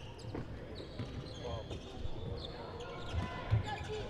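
A basketball being dribbled on a hardwood court, with dull thuds of the ball; the clearest bounces come near the end. Faint voices sound in the background.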